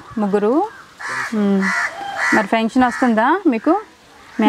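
A crow cawing three times, harsh calls about half a second to a second apart, between stretches of talk.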